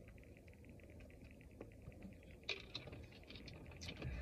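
Near silence: a faint low hum inside a car, with a few soft clicks about two and a half seconds in.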